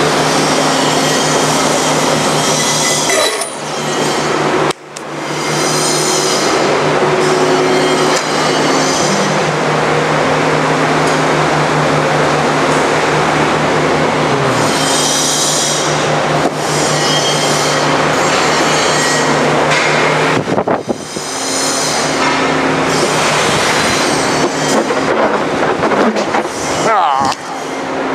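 Forrest Model 480i horizontal band saw running with a steady motor hum while its blade slices through a large block of foam, a loud dense hiss that drops out briefly a few times.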